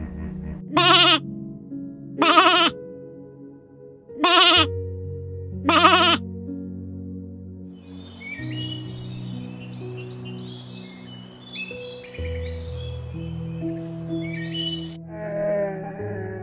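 Soft background music with sustained chords, broken in the first six seconds by four loud animal calls, each about half a second long and about a second and a half apart. A run of short, high chirps follows in the middle stretch, over the music.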